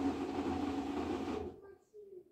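LG Direct Drive washing machine trying to spin its drum: a steady loud hum of motor and tumbling drum that cuts off abruptly about one and a half seconds in. The sudden stop is the fault behind the machine's LE error, traced to a faulty tachometer sensor on its direct-drive motor.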